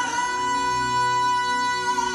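Music from a televised singing performance: a male singer holds one long, steady high note over instrumental backing.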